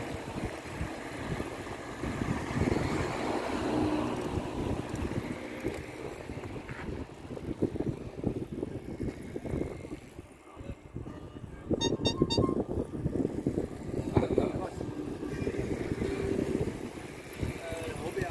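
Wind buffeting the microphone while a column of cyclists rides past, with riders' voices and a car going by. A bicycle bell rings briefly, in quick repeated strokes, about twelve seconds in.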